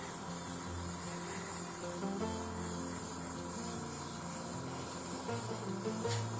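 Airbrush spraying, a steady hiss, over background music with a bouncing bass line.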